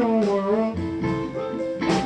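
Live blues band playing, with an electric guitar line over upright bass and drums between the sung lines.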